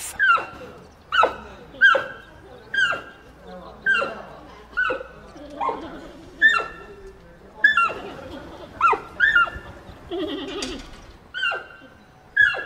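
Giant panda bleating repeatedly during mating: short calls about one a second, each ending in a quick drop in pitch, with a lower, rougher call near the end.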